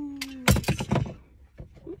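A sharp click, then a quick clatter of several clicks about half a second in, as a Springfield Hellcat Pro pistol is handled and lifted out of its case.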